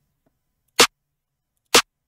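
A snare drum one-shot sample, in compressed MP3 form at a 32 kHz sample rate, played back twice about a second apart: two short, sharp hits with digital silence between them.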